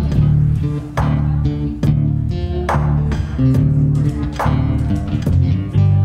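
Live looped rock-blues instrumental: electric guitar played over a low, sustained bass line, with sharp struck accents a little under a second apart.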